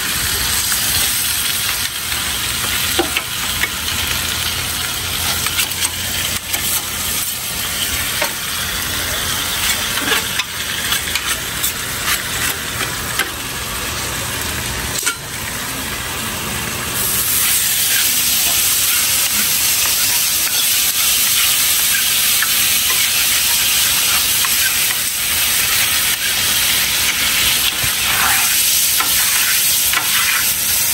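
Food sizzling on a hot flat-top iron griddle, with scattered clicks and scrapes of metal utensils on the plate. The sizzle grows louder and steadier about 17 seconds in.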